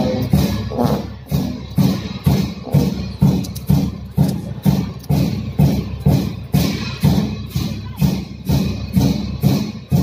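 Monastery cham-dance music of drum and cymbal strikes in a slow, steady beat, about two strikes a second, each clash ringing briefly.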